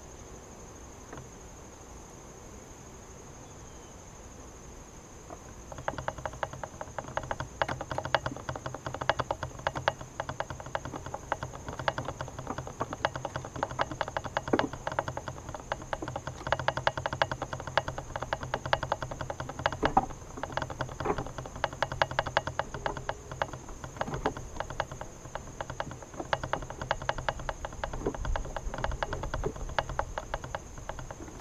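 Honeybees from the opened hive buzzing close to the microphone: a low steady buzz with a dense run of rapid ticking and tapping over it, starting about six seconds in.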